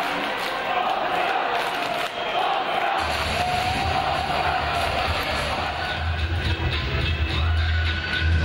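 Music over an ice arena's PA with crowd noise beneath it; a heavy bass comes in about three seconds in.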